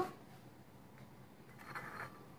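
Metal ice cream scoop scraping through chocolate chip cookie dough in a glass bowl: a faint tick about a second in, then a short faint scrape near the end.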